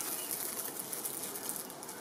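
A small plastic-wrapped package rustling and crinkling as it is handled, a steady crackly rustle.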